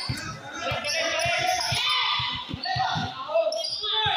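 A basketball being dribbled on a concrete court, with repeated irregular bounces, under players' raised voices that are loudest in the middle.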